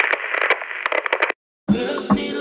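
A short, tinny, radio-like sound clip with sharp crackles, cutting off suddenly a little past a second in. After a brief gap, music starts near the end.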